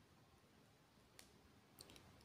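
Near silence with a few faint, sharp clicks, one a little after a second in and a couple near the end: small glass seed beads and a beading needle clicking together as the beads are threaded.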